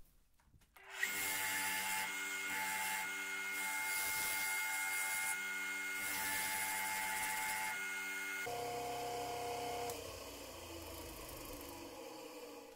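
Small bench grinder running, with a wooden handle held against its wheel, giving a steady motor hum and a rubbing, grinding noise. The pitch pattern changes about two thirds of the way through, and near the end the motor winds down with a falling tone.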